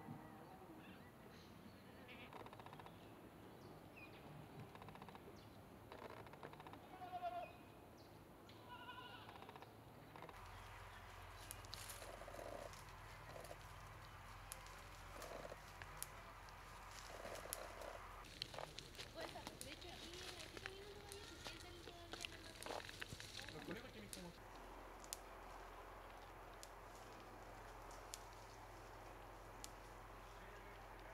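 Faint sounds of goats grazing: a few short bleats in the first ten seconds, then many small crackles and snaps of twigs and brush as goats browse the undergrowth close by.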